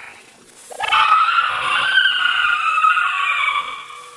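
A woman's high-pitched, witch-like screech, held for about three seconds and wavering slightly in pitch, starting about a second in and fading near the end.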